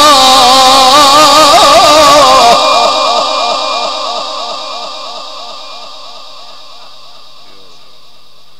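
A male Quran reciter's voice, amplified through a microphone, holding the end of a long melodic phrase on one note with a wavering ornament. It stops about two and a half seconds in, and a long echo trails away over the following few seconds.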